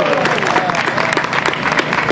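Outdoor audience applauding with dense, steady clapping.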